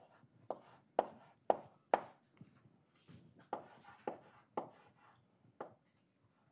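Chalk writing on a blackboard: a series of sharp taps and short scrapes as letters are written. Four come evenly about half a second apart, then after a short lull several more.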